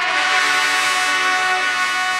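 Marching band brass section, from trumpets down to sousaphones, holding one long, loud chord.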